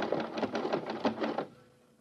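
Sound effect of the logic computer working out its answer: a rapid mechanical clatter, like a typewriter or teleprinter, that stops about a second and a half in.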